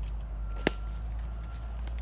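A single sharp snap about a third of the way in, with a fainter click near the end, over a low steady rumble.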